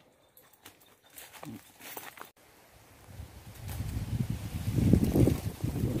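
Wind buffeting the microphone outdoors: a low rumble that starts faint about three and a half seconds in and grows louder. Before it the sound is very quiet, with a few faint rustles, and it breaks off abruptly a little over two seconds in.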